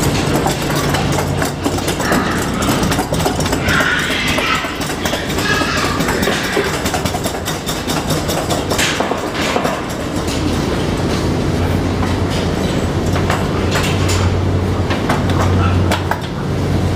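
Hog carcass cart loaded with a dead pig being pulled over slatted concrete flooring, its wheels rattling and clacking steadily over the slats.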